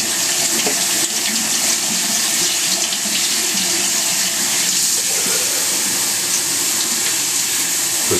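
Kitchen faucet running steadily into a stainless steel sink. The water pours through a plastic sprouter cup of seeds and drains out of its bottom, rinsing the seeds.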